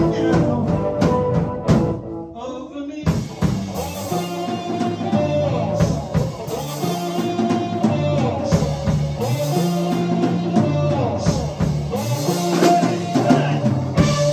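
A live rock band playing an instrumental passage on electric bass, electric guitar and drum kit, with a walking bass line under the guitar. The band thins out briefly about two seconds in, then comes back in fully about a second later.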